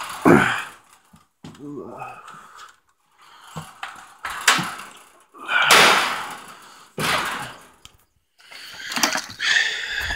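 Irregular bursts of knocking, scraping and shuffling from a person making his way through a metal-framed mesh pen gate, with handling noise on the camera; the loudest burst comes about six seconds in.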